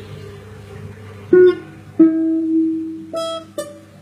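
A plucked string instrument playing single notes slowly: four notes, each left to ring, the second one, about two seconds in, held longest. A low steady hum lies underneath.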